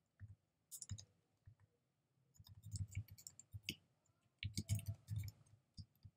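Computer keyboard keys being typed, faint clicks coming in short bursts with brief pauses between them.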